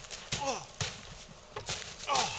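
A man groaning once, falling in pitch, about a third of a second in, then a couple of thumps and crunches of steps in snow.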